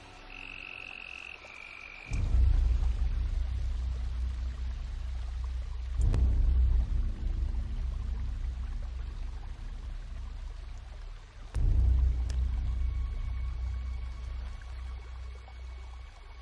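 Film soundtrack: a deep low rumble that comes in suddenly about two seconds in and swells up twice more, about six and about twelve seconds in, fading between swells. It follows a brief high steady tone at the start.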